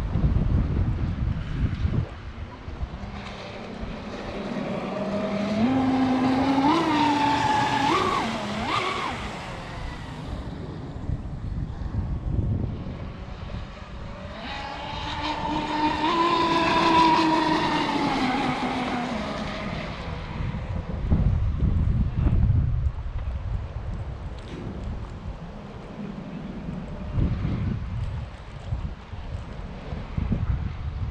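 Electric RC speedboat on 12S LiPo power running out on the water in two passes. On the first, its motor whine climbs in steps as the throttle opens; on the second, about halfway through, the whine rises and falls as the boat goes by. Gusty wind on the microphone throughout.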